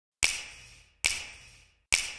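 Three sharp snaps, evenly spaced a little under a second apart, each dying away quickly.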